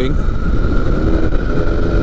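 Engine and propeller of a Pegasus Quik flexwing microlight trike (Rotax 912S flat-four) running steadily in cruise, heard from the open cockpit with heavy wind rumble on the microphone. The engine note wavers slightly about a second in, then holds steady.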